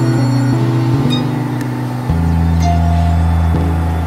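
Layered experimental synthesizer music of sustained low drones that switch abruptly from one held chord to another, a deeper bass drone taking over about two seconds in, with a few faint high clicks above.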